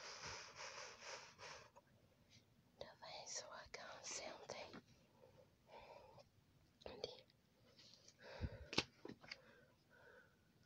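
Faint whispering, a person reading a picture book aloud under their breath, with a few soft knocks and paper sounds from the pages being handled and turned; the loudest come near the end.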